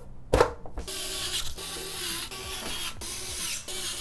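A knock as the perforated rear panel is set onto a Thermaltake Core P3 PC case, then a steady rough grinding, ratchet-like noise of a screwdriver driving the panel's screws.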